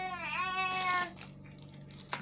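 A baby's drawn-out whining cry, high-pitched, lasting about a second and a half and ending about a second in, its pitch dipping briefly partway through.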